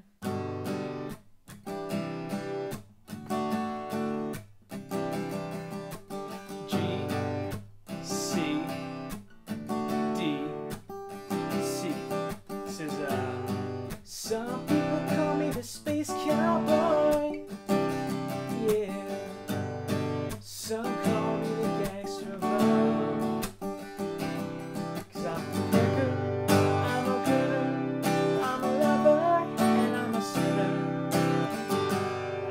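Steel-string acoustic guitar strummed in a steady rhythm, cycling through the chords G, C, D, C.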